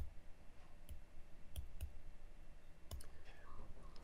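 Computer mouse clicking about six times, single sharp clicks at irregular intervals, as keys are pressed one by one on an on-screen calculator.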